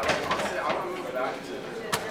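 A basketball hitting an arcade basketball machine with a sharp thud near the end, over background voices in a large room.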